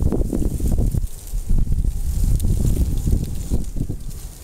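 Wind buffeting the microphone: an irregular low rumble that gusts up and down.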